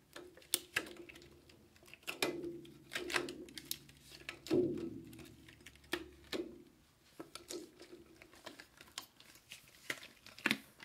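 Fingers tapping on silicone stretch lids stretched over containers, played like small drums. The taps are irregular and many have a short low ring. The taps grow lighter after about seven seconds.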